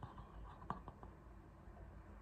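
Near silence: faint breathing through a wide-open mouth while a cotton swab is rubbed at the back of the throat for a throat sample, with a couple of faint clicks a little under a second in.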